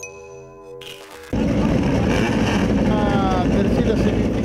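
A short musical logo jingle with steady tones, cut off about a second and a half in by loud pit-lane noise: racing midget car engines running, with voices over them.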